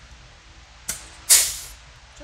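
Pneumatic punch/flange tool cycling once on sheet metal: a sharp snap about a second in as the jaws press the offset edge, then a short burst of hissing exhaust air.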